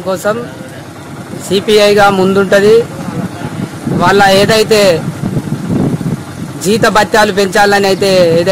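A man's voice speaking in three phrases, with background noise between them.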